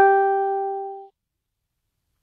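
A single musical note rings and fades, then cuts off abruptly about a second in, leaving dead silence.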